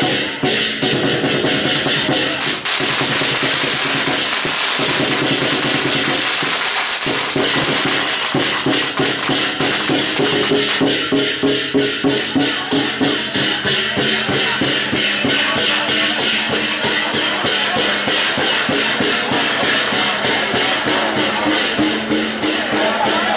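Lion dance percussion band playing: a large barrel drum with cymbals and gongs in a fast, steady run of strikes, accompanying a performing lion dance.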